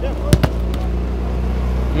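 A single sharp thud of a football being struck about a third of a second in, over a steady low hum.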